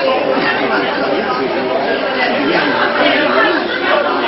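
Indistinct chatter: several voices talking over one another, no words clear.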